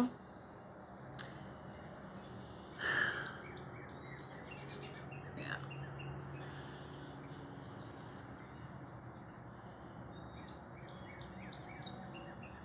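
Small birds chirping faintly over a low background hum, with a brief louder noise about three seconds in.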